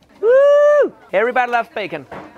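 A high-pitched voice holding an excited "ooh" for about two-thirds of a second, followed by a few quick voiced syllables.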